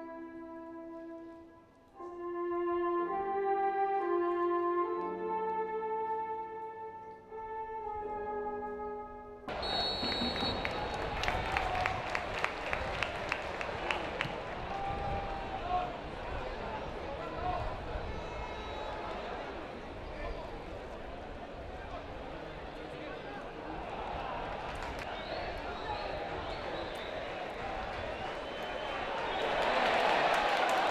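A solo brass instrument plays a slow melody of held notes. About nine seconds in it gives way abruptly to football stadium crowd noise, with a run of sharp claps and shouts that carries on as a steady crowd hum. The crowd swells near the end.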